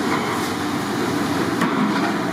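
A ladle stirring chicken in masala in a large steel pan, over a steady noisy background, with one sharp knock about one and a half seconds in.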